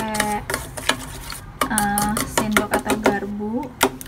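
Metal spoon beating eggs and sugar in a stainless steel bowl: a quick, uneven run of clinks as the spoon strikes the bowl.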